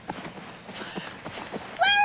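Faint scattered knocks, then a horse whinnies loudly near the end: a high call that wavers and falls away.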